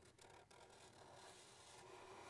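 Faint rubbing of a black Sharpie marker tip drawing lines on paper, barely above room tone.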